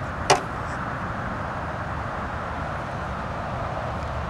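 A single sharp knock, such as a shoe or hand striking the metal of a compact tractor, about a third of a second in, over a steady rumble and hiss.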